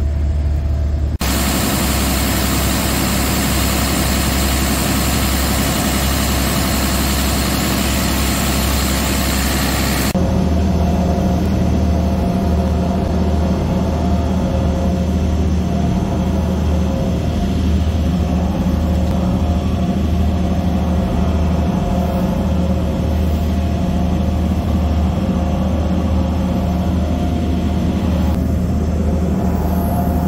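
Marine Caterpillar diesel engines running in a boat's engine room, a steady low drone with a deep hum, plain from about ten seconds in. Before that there is a loud, even rushing noise.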